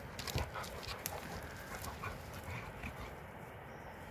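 Two dogs, a Bernese mountain dog and a flat-coated retriever, play-wrestling on stony ground. Dog scuffling with a cluster of sharp knocks and clicks in the first second, then quieter scuffling.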